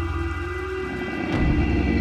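Eerie held horn-like drone from the soundtrack over a deep rumble, swelling about one and a half seconds in.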